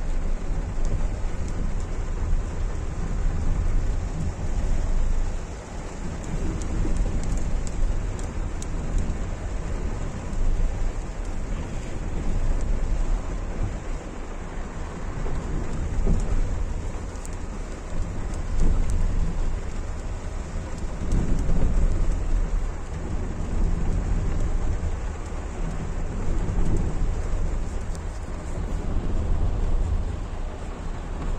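Heavy rain drumming on a car's roof and windscreen, heard from inside the cabin, over a deep, uneven rumble of the car driving along a rough, muddy track.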